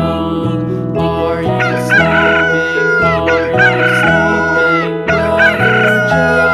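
Rooster crowing cock-a-doodle-doo three times, the first about a second and a half in, over an instrumental nursery-rhyme backing track with a steady beat.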